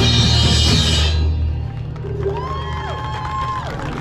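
Drum corps show music: a loud full-ensemble passage with drums and cymbals that cuts off about a second in, followed by quieter held tones that slide up and down in pitch.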